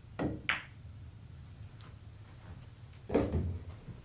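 Pool shot: the cue tip strikes the cue ball, and a moment later the cue ball clicks sharply against the object ball. About three seconds in comes a louder, duller knock with a short rumble.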